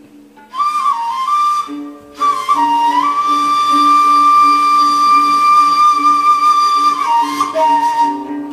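Ney, the end-blown reed flute of Sufi music, playing a slow melody: a short phrase, then a long held high note that steps down near the end. A lower steady note sounds underneath.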